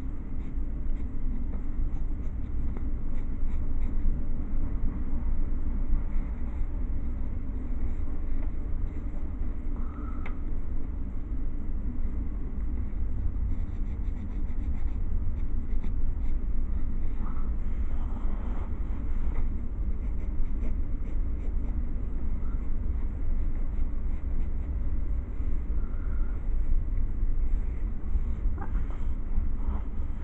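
Drawing strokes scratching on paper as a sketch is worked on, faint and intermittent, over a steady low hum.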